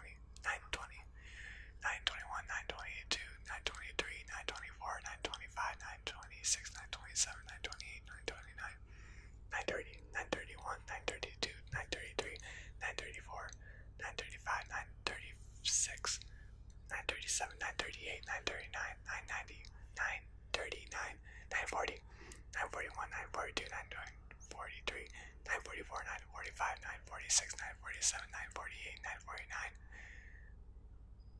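A man whispering numbers one after another, counting aloud in the nine hundreds, with a steady stream of short whispered words and crisp 's' sounds.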